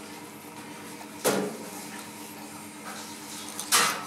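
A filleting knife drawn along a flatfish's backbone to lift a fillet, giving two short scraping strokes, one about a second in and one near the end, over a steady kitchen hum.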